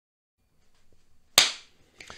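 One sharp smack about one and a half seconds in, ringing briefly in the room.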